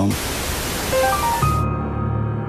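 Television static hiss that cuts off after about a second and a half, with a short run of rising electronic notes near its end. A low, droning music bed takes over.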